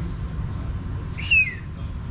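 Steady low room hum, with one short high-pitched squeak that falls slightly in pitch a little past halfway.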